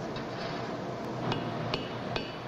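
Metal fire-assay tongs clinking as samples are handled: a few sharp clinks with brief metallic ringing, the two clearest about a second in and half a second later, over a steady background hiss.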